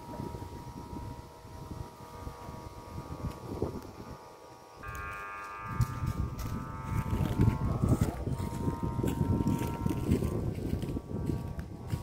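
Wind buffeting the microphone, growing much stronger about five seconds in, over a faint steady hum.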